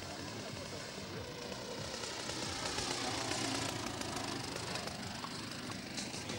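Two-stroke petrol engine (ZDZ 80) of a large radio-controlled model biplane running at low throttle on its landing approach. It grows louder to a peak about three and a half seconds in as the model passes, then fades.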